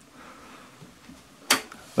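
Quiet room tone, then a single short knock about one and a half seconds in as the plastic VISUO XS812 quadcopter is set down on the table.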